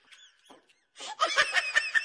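A man snickering, a run of short laughs starting about a second in.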